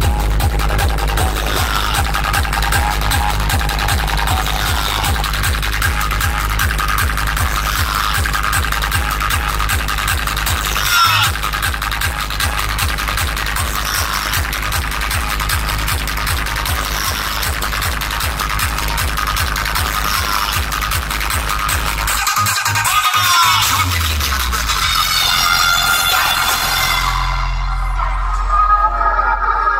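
Electronic dance music played at high volume through a large DJ sound-system stack, dominated by heavy, rapidly pulsing bass. The bass drops out for a couple of seconds about 22 seconds in, then comes back.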